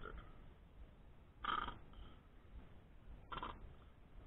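Plastic squeeze bottle of French's yellow mustard sputtering as it is squeezed out, two short sputters about two seconds apart.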